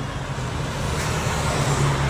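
Road traffic passing on a street: a vehicle's engine and tyres, a steady hiss with a low rumble that grows stronger in the second half.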